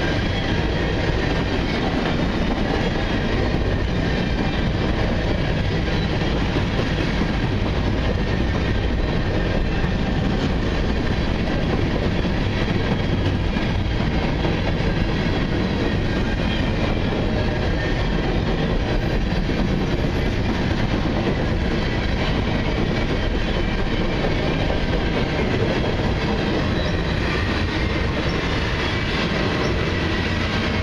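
Cars of a mixed freight train rolling past at close range: a loud, steady rumble and clatter of steel wheels on the rails.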